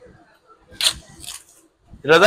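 Bubble wrap and cardboard packaging rustling and crinkling as it is handled and pulled off a motorcycle silencer, in two short bursts, the first and louder a little under a second in.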